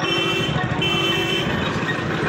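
A vehicle horn sounds twice in quick succession, each blast about half a second long. Under it, a motorcycle engine runs steadily.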